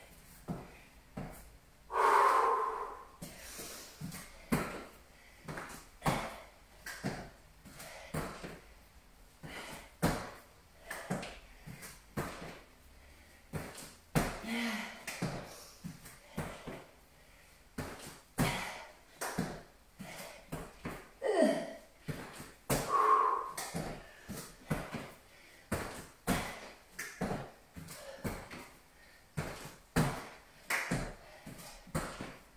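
Feet and hands thudding on a rubber gym floor during burpees, about one thud a second, with two short vocal sounds from the exerciser, about two seconds in and again near 23 seconds.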